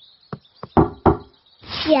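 Knocking on the treehouse door: a few short knocks, the louder two close together about a second in.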